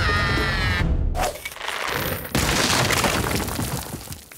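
Music with a held note stops about a second in, followed by a long crashing, breaking rumble of a huge stone statue falling and crumbling, with a second heavy crash a little past the middle. Cartoon sound effect.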